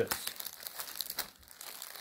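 Thin clear plastic bag around a stack of tortillas crinkling irregularly as it is pressed and handled.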